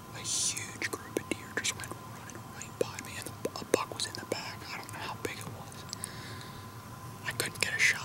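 A man whispering in short hissy phrases, with no voice behind the breath.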